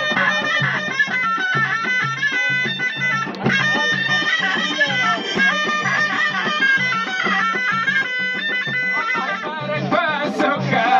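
Jbala ghaita, a Moroccan double-reed shawm, playing a loud, nasal, ornamented melody over regular frame-drum beats.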